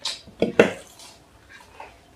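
Close-miked eating of crisp fried samosas: crunchy bites and chewing in short bursts, the loudest about half a second in.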